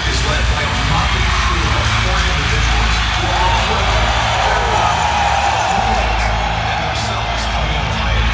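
Pre-recorded concert intro played through an arena PA: a deep, steady drone with muffled news-broadcast voices, over the noise of the waiting crowd. A few wavering pitch glides rise and fall in the middle.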